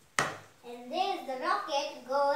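A single sharp smack just after the start, then a young boy talking.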